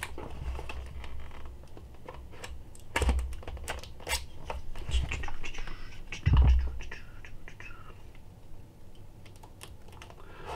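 Cardboard hard-drive retail box being handled and turned over: scattered clicks, taps and scrapes, with a few dull thumps, the loudest about six and a half seconds in.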